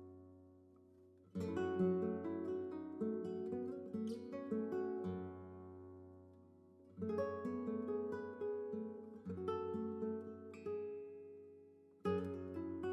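Background music: solo acoustic guitar playing plucked notes that ring and fade. The guitar plays two phrases, the second starting about halfway through.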